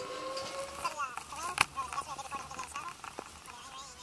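Distant voices calling out over a faint steady tone that fades about a second in, with one sharp click about one and a half seconds in.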